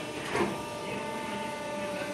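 A foam sheet cutting machine and its conveyor running: a steady mechanical hum with a thin steady whine, and a brief clack about half a second in.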